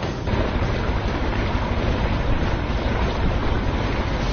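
Steady rush of water and wind buffeting the microphone as a crew paddles an assault boat across a pond.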